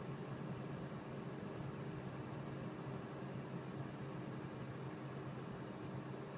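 Steady low hum and hiss inside a stationary car's cabin, the engine idling with the ventilation fan blowing; no sudden sounds.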